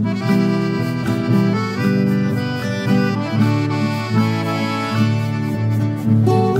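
Instrumental background music with sustained notes changing in steady steps.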